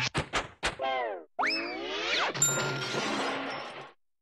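Cartoon-style sound effects: a few quick sharp hits in the first second, a pitch sliding down, then a rising pitch sweep, followed by a noisy rush with a steady high tone that fades out near the end.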